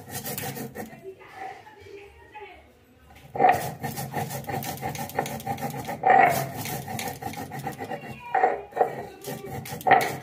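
A stone roller (nora) is rubbed back and forth on a stone grinding slab (shil), grinding dried red chilli fine with a gritty, grating rasp. The strokes are faint at first and turn loud about three seconds in, with a strong push roughly every two to three seconds.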